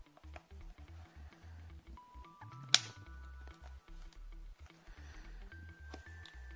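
Background music with a stepping bass line, over light clicks of a plastic satnav case being pried open with a plastic card. One sharp, loud snap comes about halfway through as a clip of the case lets go.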